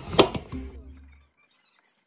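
A few sharp clicks and taps of hands and tools on an opened electric fan motor's wiring, the loudest a single click just after the start, over a low hum. Everything cuts off abruptly a little over a second in, leaving silence.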